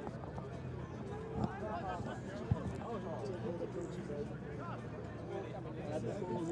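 Indistinct voices of rugby players calling to each other on the field, over a steady low hum, with two brief sharp knocks, about one and a half and two and a half seconds in.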